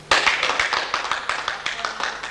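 Several people clapping their hands, starting abruptly and carrying on as a dense run of separate claps.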